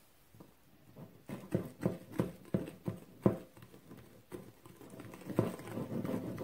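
Wire whisk beating egg yolks, sugar and flour for pastry cream in a ceramic bowl, knocking against the bowl about three times a second, starting about a second in.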